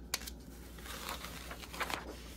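Paper carrier sheet of a heat transfer being handled and peeled off a freshly pressed T-shirt: rustling, crinkling paper that gets louder near the end as the sheet comes away.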